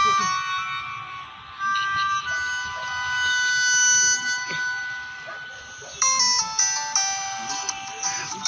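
Instrumental backing music: a reedy, electronic-sounding melody of held notes that step in pitch, with a quicker run of notes about six seconds in.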